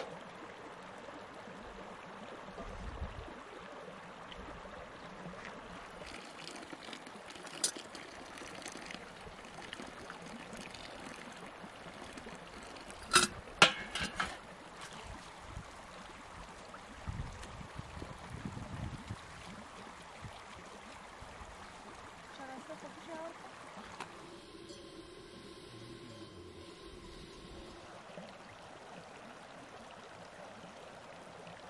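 Shallow stream running over stones, with sharp clinks of metal dishes and pans being washed in it, loudest in a cluster about halfway through.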